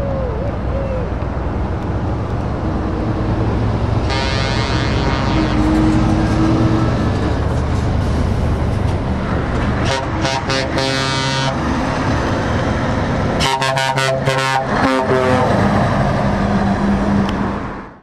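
Scania S-series V8 truck engine running with a steady low rumble as it drives by. Air horns sound over it: one long blast about four seconds in, a run of short toots around ten seconds, and a louder string of short blasts around fourteen seconds.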